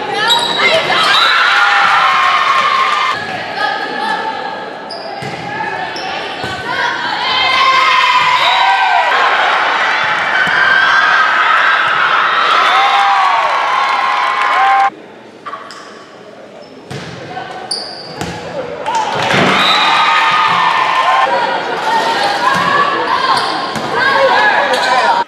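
Live volleyball game sound in a gymnasium: many voices shouting and cheering, with sharp smacks of the ball being hit and landing. The sound drops away for a couple of seconds about halfway through, then returns.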